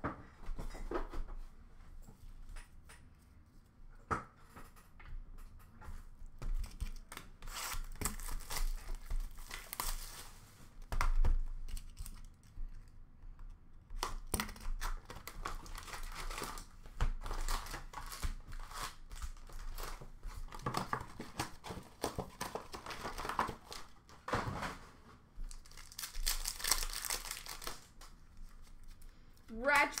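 Foil hockey card packs being torn open and their wrappers crinkled, in irregular bursts of tearing and rustling with scattered sharp clicks between.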